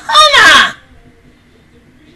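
A person's loud, high-pitched shriek or squeal, sliding in pitch and lasting about half a second, cut off under a second in.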